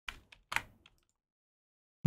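Computer keyboard keys pressed for a Ctrl+Z undo shortcut: a few short clicks in the first half second, the loudest pair about half a second in.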